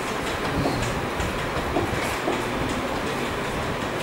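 Steady rumbling hiss of room background noise, with a few faint taps.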